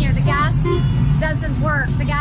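People talking, over a steady low rumble of street traffic.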